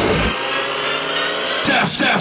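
Hardcore techno (gabber) DJ mix at a breakdown: the heavy kick drum cuts out just after the start, leaving sustained synth tones, and sweeping pitch glides come in near the end.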